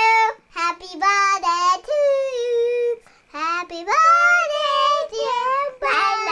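A young child singing in a high voice, in several phrases of held notes, with a brief pause about three seconds in.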